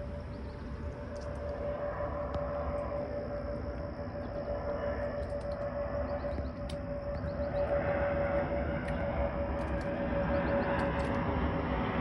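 Jet airliner flying low overhead: a steady high engine whine over a rushing roar of engine noise that grows steadily louder as it comes closer.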